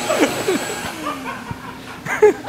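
A man laughing in a few short bursts that fade away.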